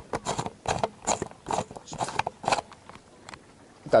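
Handling noise from an action camera being fitted onto a tripod: a quick, irregular string of clicks, knocks and scrapes right on the microphone for the first two to three seconds, then quieter.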